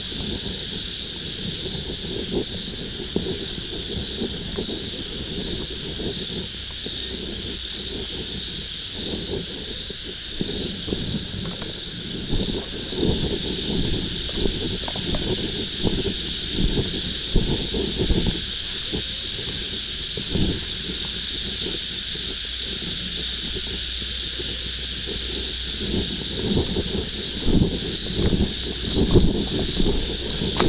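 Steady high-pitched chorus of night insects, unbroken throughout, under irregular low bumps and rustling from moving and handling things in the vegetation of a ditch, heavier in spells about halfway through and near the end.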